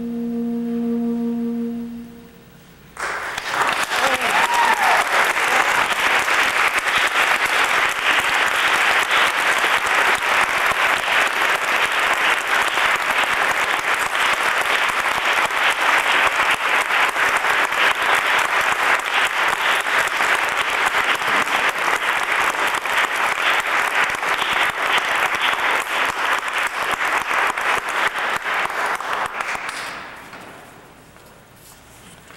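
A soprano saxophone with guitar holds a final note that ends about two seconds in. After a brief pause, audience applause starts and continues steadily, fading near the end.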